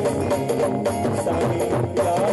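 Live Sindhi devotional song: a band playing a wavering melody over a drum beat.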